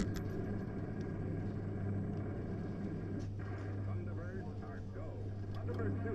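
R.G. Mitchell Thunderbirds 2 coin-operated kiddie ride running: a steady low hum from its motor, with faint voices over it.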